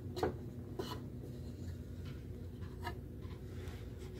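Stiff picture cards being handled and laid down on a felt strip: a few light taps and rustles, the loudest just after the start, over a low steady room hum.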